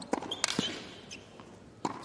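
Tennis rally on a hard court: sharp pops of rackets striking the ball, with ball bounces between them. The loudest strike comes about half a second in, and another comes near the end.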